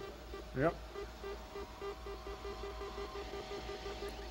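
Quiet electronic beep pulsing evenly at about five a second over a steady hum: a sci-fi spacecraft sound effect on the film's soundtrack that sounds like a deep-fryer timer.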